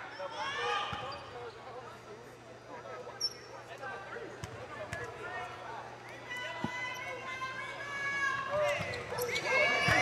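A basketball bounced on a hardwood court at the free-throw line: a handful of separate single thuds, roughly a second apart, with voices in the gym behind.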